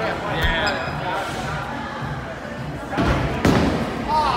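Bowling alley ambience of background voices and music, with a couple of heavy thuds about three seconds in as a bowling ball is released and lands on the lane.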